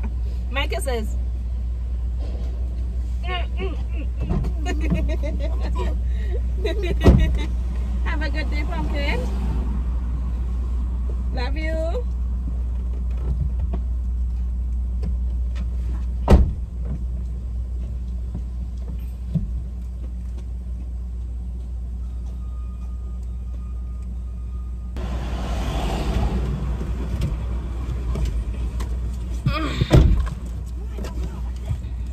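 Car engine idling, heard from inside the cabin as a steady low rumble. Two sharp thuds, about seven and sixteen seconds in, are car doors being shut. Near the end, outside noise swells as a door is opened.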